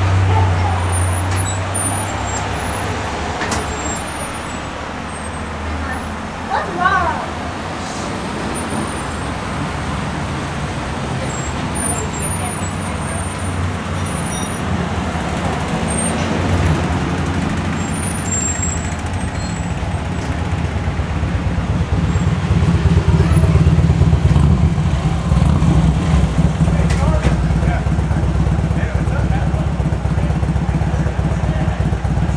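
Road traffic: car engines running and vehicles passing, a steady low rumble that grows louder in the second half. About seven seconds in there is a brief wavering chirp.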